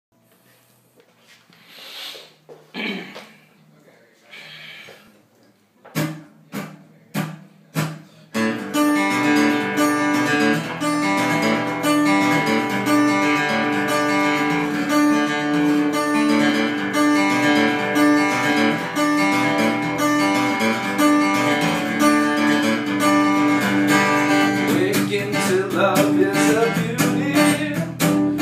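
Cutaway acoustic-electric guitar played solo: four sharp separate strokes about six seconds in, then from about eight seconds continuous picked playing with a low note ringing through and many sharp percussive strokes.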